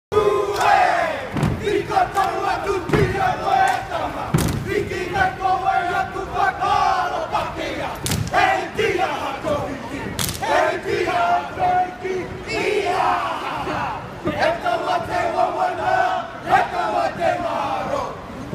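A group of men chanting a Māori haka in loud unison, shouting the lines together in strong rhythmic phrases. Sharp thumps mark the chant several times in the first ten seconds.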